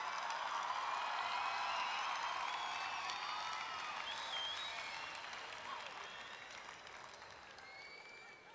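Audience applauding, with scattered voices and calls mixed in. It peaks about two seconds in, then slowly dies away.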